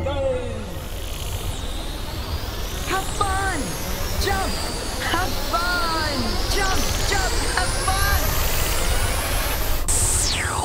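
Electronic cartoon sound effects for a 'brain gain' thought-power burst: long sweeping rising and falling whooshes over a low rumble, with a run of short warbling chirps in the middle.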